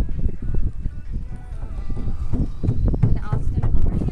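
Uneven, gusty rumble of wind on the microphone and water moving around a small sailboat's hull, with faint voices behind it.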